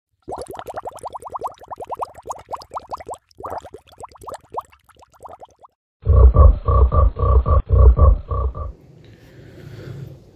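Frog calls: a rapid trill of short rising pulses, with a brief break about three seconds in, stopping just before six seconds. Then a louder, deeper croaking of about nine pulses lasting under three seconds.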